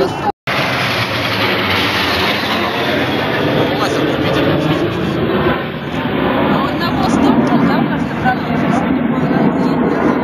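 Steady rushing noise of a formation of smoke-trailing jet aircraft flying over, with voices mixed in. A brief dropout cuts the sound just after the start.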